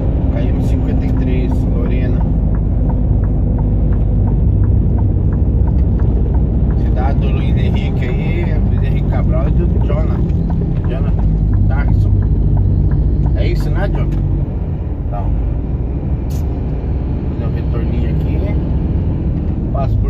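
Heavy truck's diesel engine and road noise heard inside the cab while driving, a steady low rumble that eases slightly about fourteen seconds in.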